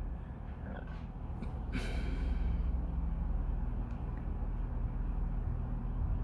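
A steady low hum, with one brief tap a little under two seconds in.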